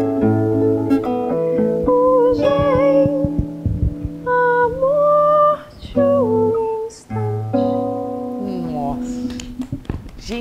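Nylon-string classical guitar played with a woman singing a slow melody over it. The music breaks off briefly about seven seconds in, and near the end the guitar walks down in a descending run of notes.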